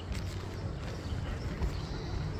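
Open-air ambience: a steady low rumble with faint distant voices and a few light scattered taps.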